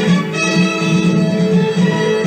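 Background music with stringed instruments, playing steadily.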